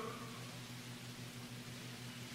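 Faint steady hiss with a low hum underneath: the background noise of an old recording, with no speech.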